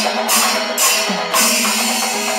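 Panchavadyam temple percussion ensemble playing, with ilathalam hand cymbals clashing in a steady beat about twice a second over a steady held low tone.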